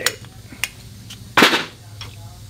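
Metal clicks and a louder clunk from parts being handled at a valve-seat cutting machine: a sharp click at the start, a lighter one about half a second later, and the loudest knock about a second and a half in, over a faint low steady hum.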